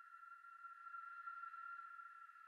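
Near silence with a faint, steady high-pitched tone held without change: a sustained drone from the quiet ambient background music.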